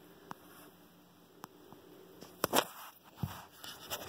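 Quiet hand handling at a sewing machine's needle and presser foot: a few faint isolated clicks and taps as fingers work the thread, with one sharper tap about two and a half seconds in.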